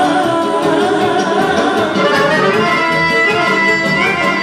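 Live band dance music led by a button accordion, with a woman singing into a microphone; a long high note is held from about halfway through.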